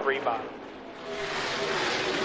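The pack of NASCAR Cup cars' V8 engines racing on track, an even roar that dips briefly and then swells over the last second as cars close in on the microphone.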